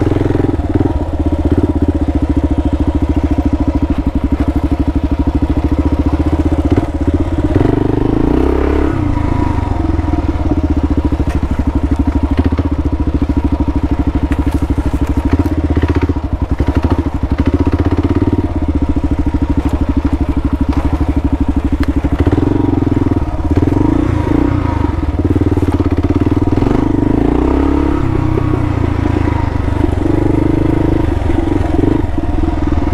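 Kawasaki KLR650's single-cylinder four-stroke engine running at low revs, rising and falling with the throttle several times. A few knocks come from the bike on rough ground around the middle.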